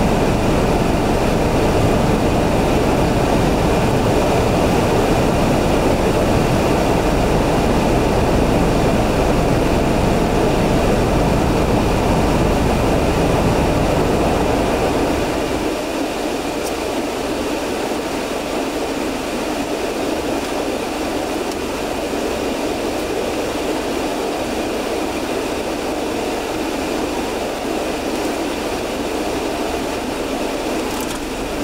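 Steady cabin noise of a car idling and creeping forward in a queue: a low engine rumble under a broad hum, with the deep rumble falling away about halfway through.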